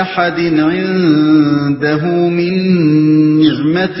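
A man chanting Quranic verses in Arabic in melodic recitation (tilawat), drawing out long held notes that waver up and down.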